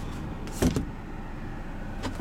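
A single short knock about two-thirds of a second in, from a hand bumping the overhead storage shelf in the cabin of a 2010 Ford Transit Connect, over a steady low hum.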